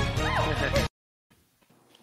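A woman singing over a pop backing track at the end of a long sustained high note; the note breaks into a short swoop up and back down in pitch. The sound cuts off abruptly just under a second in, leaving near silence.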